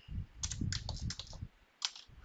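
Computer keyboard typing: a quick run of keystrokes lasting about a second, then a short pause and one more keystroke near the end.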